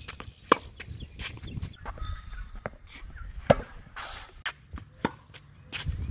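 Tennis ball being struck and bouncing on a hard court: two sharp pops about three seconds apart, with lighter ticks between them.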